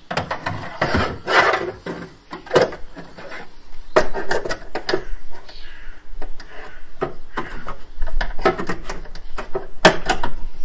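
Hands working a metal mounting bracket into a car's rear side panel: irregular knocks, scrapes and rubs of metal against the sheet-metal bodywork and plastic trim.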